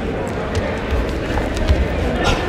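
A few dull thuds of wrestlers' feet and bodies on a padded wrestling mat as one wrestler shoots in for a takedown, under a murmur of voices.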